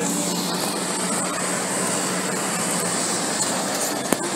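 Steady running noise of a moving vehicle heard from on board, with an even low hum underneath.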